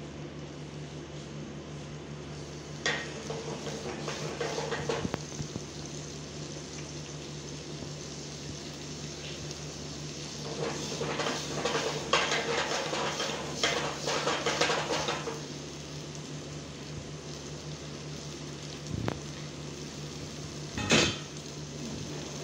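Potatoes frying in oil in a nonstick frying pan on a gas burner. The pan is shaken and tossed over the grate in two spells, a few seconds in and again around the middle, rattling and scraping. Two sharp knocks come near the end.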